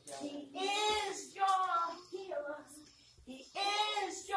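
A woman singing a gospel hymn without accompaniment, in drawn-out, bending notes with no clear words.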